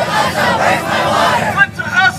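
Crowd of protesters shouting together for about a second and a half, then a single voice starts up again near the end.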